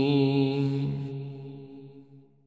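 A man's chanted voice holding the last note of an Arabic Ramadan supplication, with echo, fading away over about two seconds.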